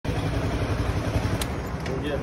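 Motorcycle engine idling with a steady low throb.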